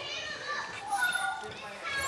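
Background chatter and calls of children's voices, faint and scattered, with a faint high squeak or two.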